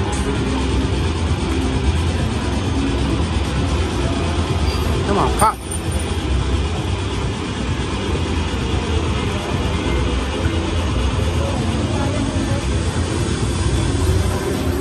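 Casino floor din: background chatter and a steady low rumble under slot machine game sounds, as a Buffalo Triple Power slot machine's reels spin. A short wavering tone sounds about halfway through.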